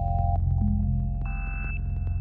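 Electronic background music: a steady low synth drone under short, held, pure-sounding tones that change pitch, with a high tone coming in about halfway through.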